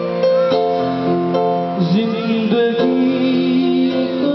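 Electronic keyboard playing a melody over held chords, with the chords changing every half second or so and a few short sliding notes near the middle, amplified through the stage speakers.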